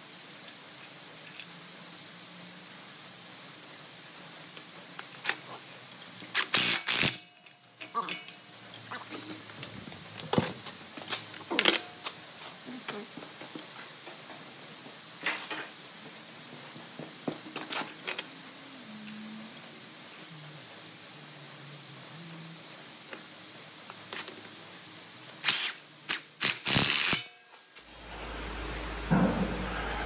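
Scattered clinks and knocks of hand tools and bolt hardware being handled on a steel magnet housing, with two louder bursts of about a second each.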